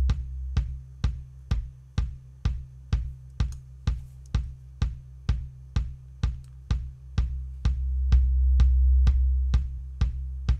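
Kick drum loop playing about two beats a second, with a ringing low boom tuned to C at about 64 Hz. The EQ cuts that 64 Hz ring so the kicks turn thin and short, then boosts it again about three quarters of the way in so the low boom swells back.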